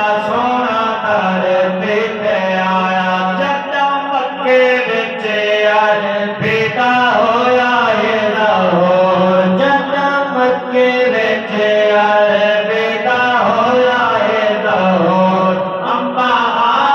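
Men's voices reciting a naat into microphones over a sound system: a chanted, melismatic devotional melody with long held notes.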